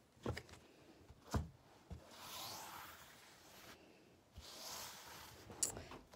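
A tarot deck being handled: a couple of soft taps, then two quiet sliding swishes of cards, the last as the deck is spread out in a fan across a mat.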